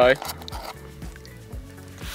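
Plastic spork scooping and stirring rehydrated freeze-dried biscuits and gravy in a foil pouch, faint under steady background tones.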